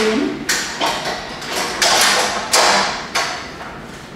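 Several metal clanks and knocks from Pilates reformers being adjusted, footbars being set to the high bar position, each knock ringing briefly.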